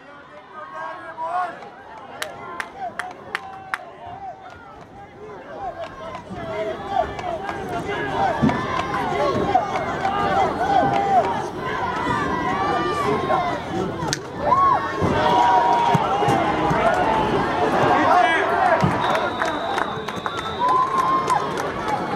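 Football stadium crowd: a few sharp clicks at first, then many voices shouting and cheering that swell up during the play and stay loud. A short high whistle tone sounds near the end.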